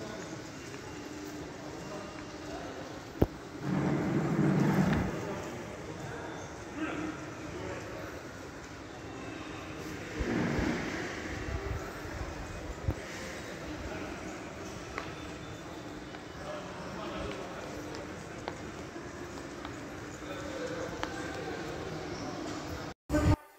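Large indoor shopping-mall hall: a steady hum with scattered faint voices. It grows louder briefly about four seconds in and again around ten seconds, and there is one sharp click a little after three seconds.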